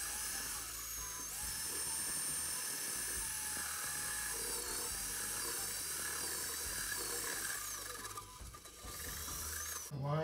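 Corded electric drill running a step drill bit through a VW Beetle's body sheet metal: a steady high whine over grinding noise, the pitch shifting slightly as the bit cuts. It drops off briefly near the end, then runs again.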